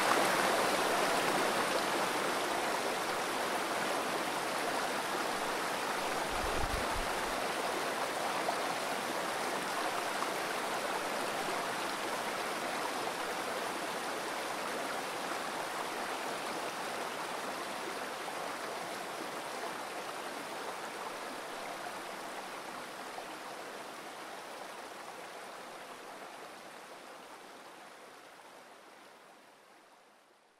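Running water of a rushing stream, a steady wash that fades out gradually until it is nearly gone at the end. A brief low bump is heard about six or seven seconds in.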